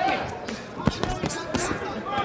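Boxing gloves landing in a series of sharp thuds during a close-range exchange, the loudest just before a second in, with voices behind.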